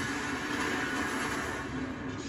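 Movie trailer sound effects playing from a television in the room: a steady, noisy rush of sound with no speech.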